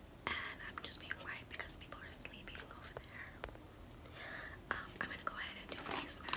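Quiet whispered speech, in short unvoiced phrases.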